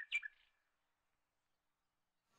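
Two faint, short, high chirps right at the start, then near silence.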